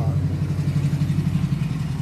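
An engine running steadily with a low, fast-pulsing hum, fading away near the end.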